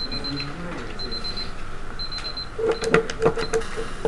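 A digital countdown timer going off, sounding short high beeps about once a second, over quiet classroom chatter; near the end come a quick run of sharp clicks.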